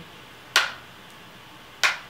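Two sharp clicks about a second and a quarter apart, each dying away quickly, as makeup tools are handled while a brush is picked up and loaded with eyeshadow.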